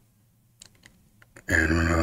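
A few faint sharp clicks in an otherwise quiet room, then about one and a half seconds in a man's long, drawn-out hesitation sound, "uhh".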